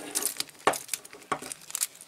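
Key turning in a cylindrical padlock, giving three sharp metallic clicks as the lock opens, with the light jingle of the keys on the key ring. The lock now turns freely after graphite powder was worked into the keyway to free the seized mechanism.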